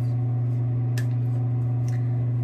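Steady low hum with a single sharp click about a second in.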